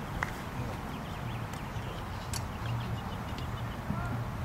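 Quiet outdoor background: a steady low hum with a few faint clicks and small chirps.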